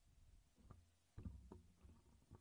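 Near silence, broken by a few faint, dull low thumps and rubbing noises of a handheld microphone being handled, the strongest just over a second in.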